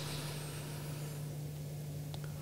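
People taking a slow, deep breath in, a faint airy rush that fades within the first second, over a steady low electrical hum.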